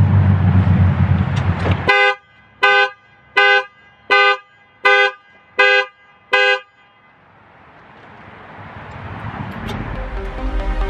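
A car horn gives seven short honks in an even rhythm, a little under one a second. Each honk is the two-note sound of a dual-tone horn.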